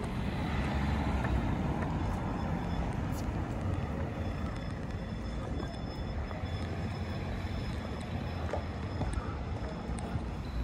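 Street traffic noise: a steady wash of passing vehicles with a low rumble, no single event standing out.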